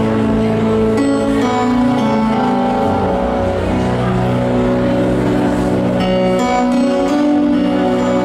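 Yamaha Motif XF8 keyboard playing an instrumental passage of held chords, with new chords struck about a second in and again around six seconds.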